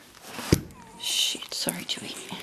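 A dog nosing at the camera close up: a sharp knock against it about half a second in, then a short breathy hiss.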